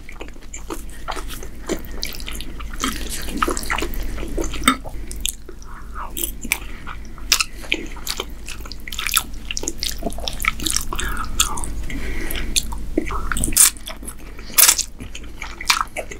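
Close-miked chewing of ribbon pasta in meat sauce: wet, sticky mouth sounds and irregular soft clicks throughout, with two louder sharp clicks near the end.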